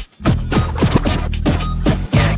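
Turntable scratching in a nu-metal song's instrumental section: quick scratches, several a second, each sliding down in pitch, over a steady bass line, with a short gap in the sound just after the start.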